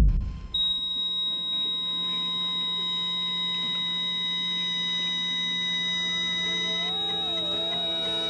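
Heart monitor flatline: one continuous high-pitched beep held without a break, the sign that the heart has stopped (flat rhythm). Soft music fades in under it near the end.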